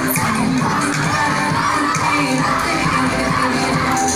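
Music playing loudly while a crowd of school students shouts and cheers over it.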